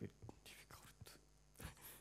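Near silence: faint room tone with a few soft breathy noises and small clicks.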